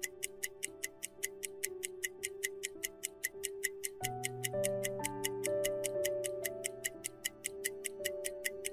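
Countdown timer ticking sound effect, an even clock-like tick about three times a second, over soft background music with held chords that change about halfway through.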